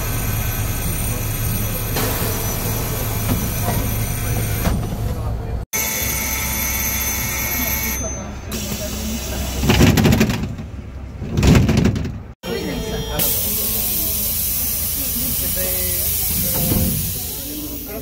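Pneumatic folding doors of city buses opening and closing in three short clips, with hisses of compressed air over the vehicle's steady low hum. There are two loud low bumps in the middle, and a long air hiss follows near the end.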